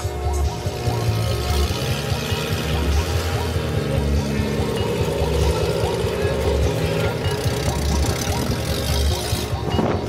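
Background music with a steady, heavy bass beat.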